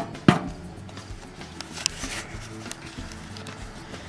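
Two sharp metal clanks in quick succession, the second louder, as the steel lid of a charcoal smoker is shut, followed by a low steady background.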